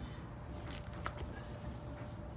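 Quiet outdoor background with a steady low rumble and a few faint short ticks about a second in.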